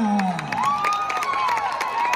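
A stadium crowd cheering and clapping, with high whoops and shouts. A drawn-out voice falling in pitch trails off about half a second in.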